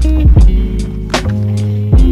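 Background music with a deep bass line and a steady drum beat.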